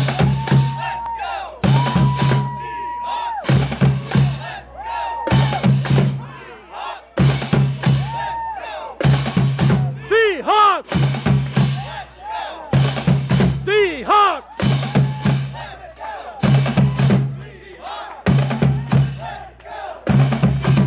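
A marching drumline of snare drums, tenor drums and bass drums playing a loud cadence, the bass drums hitting in a pattern that repeats about every two seconds.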